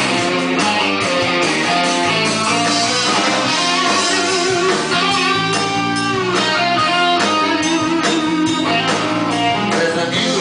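Live band playing an instrumental passage, electric guitar to the fore over bass, with bending notes about halfway through.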